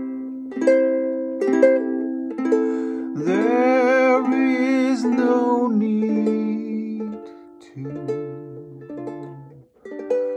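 Acoustic fretted string instrument picked in slow, ringing chords. A man's voice holds one long sung note with vibrato from about three seconds in until nearly six.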